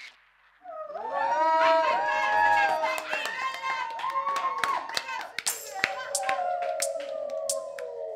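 Hand claps over a voice-like sound whose pitch rises and falls, following a moment's pause in the music. It ends on a held tone with a falling glide and further sharp strikes.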